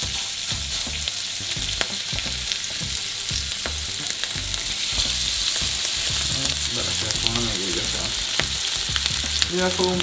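Raw ground-beef burger patties sizzling in hot oil in a nonstick frying pan, a steady hiss with frequent small pops and crackles. The sizzle grows a little louder about halfway through, once a second patty is in the pan.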